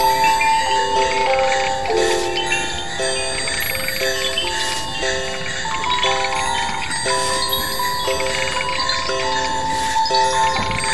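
Lo-fi improvised Christmas sound collage: overlapping loops of bell-like electronic tones stepping through short, repeating note patterns, with faint swishes recurring every couple of seconds.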